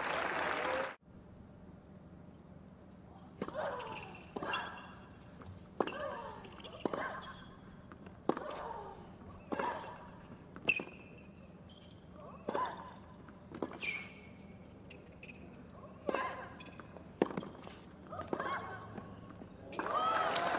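Tennis rally on a hard court: the ball is struck back and forth by rackets about a dozen times, roughly once a second, and most hits come with a short grunt from the player. A couple of brief high shoe squeaks are heard midway.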